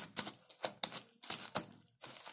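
Sticky blue fluffy slime being kneaded and pulled apart in gloved hands, giving a quick irregular run of sharp little clicks and pops as it tears off the gloves. The slime is still sticky.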